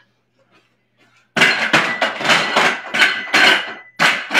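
Dumbbells being set down, clattering and knocking in a quick run of hard strikes that starts about a second and a half in, after a quiet start.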